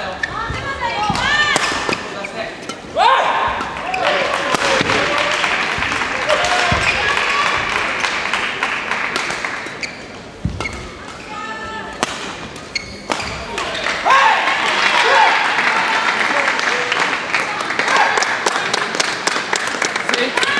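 Badminton being played in a large sports hall: sharp racket strokes on the shuttlecock and shoes squeaking on the court floor, mixed with voices in the hall. The play eases off about halfway through and picks up again.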